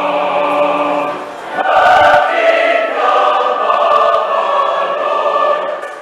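A large mixed choir of many voices singing a choral piece together in a reverberant food court, with a short break about a second and a half in and then a louder entry.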